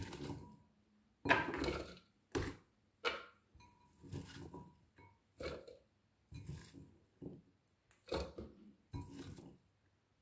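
Cut vegetable pieces (broccoli florets, carrot chunks) being picked by hand from a glass bowl and dropped into the food processor's steaming container: about ten short, light knocks and rustles, roughly one a second.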